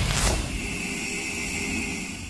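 Logo-sting sound effect: a noisy whoosh with a falling sweep about a quarter of a second in, then a steady hiss with a high ringing tone held under it.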